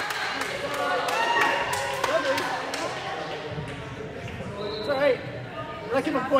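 Gym sounds between volleyball rallies: scattered voices of players and spectators, with short sharp knocks of a ball bouncing on the hardwood floor.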